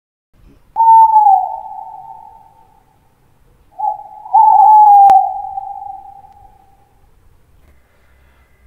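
Owl hooting twice as an intro sound effect, each hoot a long single note that slides slightly down and fades away. A sharp click lands during the second hoot.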